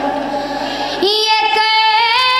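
A boy singing solo into a microphone. About a second in, his voice settles onto one long, steady high note that is still held at the end.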